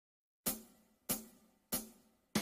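Three evenly spaced, sharp percussion strikes, a little over half a second apart, beginning about half a second in: a count-in to a piece of music.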